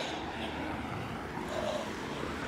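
Steady low background hum of outdoor street noise, with distant road traffic.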